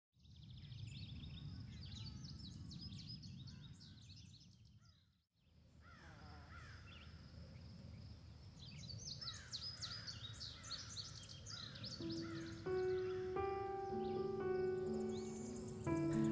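Outdoor ambience of many birds chirping in quick repeated phrases over a low, steady rumble, cut off by a brief dropout near the middle. In the last few seconds, music with held notes fades in under the birdsong.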